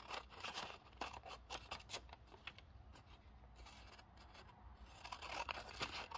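Scissors snipping through a folded paper coffee filter: a run of faint, quick cutting clicks, thickest in the first couple of seconds and again near the end.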